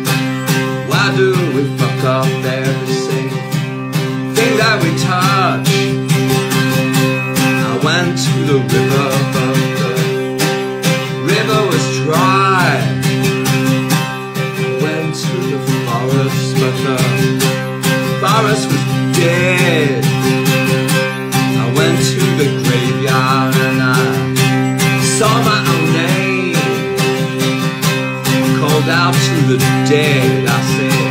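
Steel-string acoustic guitar strummed steadily, with a man's voice singing over it in long, wavering notes.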